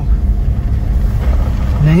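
Ford Endeavour SUV being driven on a snowy mountain road, heard from inside the cabin: a steady low rumble of engine and road noise.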